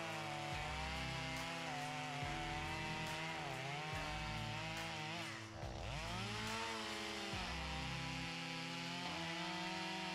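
Stihl MS250 two-stroke chainsaw cutting through a felled pine trunk, its engine pitch rising and falling as the chain works under load. About halfway through, the engine speed drops sharply and comes back up.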